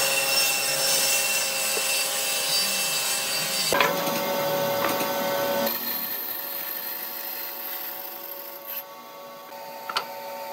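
A benchtop hollow-chisel mortiser's motor runs as its square chisel plunges into a pine rail. After a sudden change about four seconds in, a bandsaw runs with its blade cutting through the pine, quieter in the second half.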